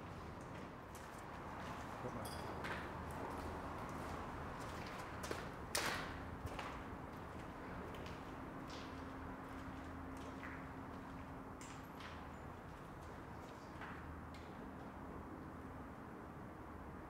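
Footsteps on a gritty concrete walkway: irregular light steps and knocks, with one sharper knock about six seconds in, over a low steady background noise.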